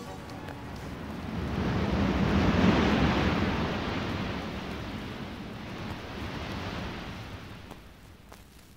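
Sea-surf sound effect ending the song: a single wave of rushing water noise swells up, peaks about three seconds in and slowly washes away to quiet.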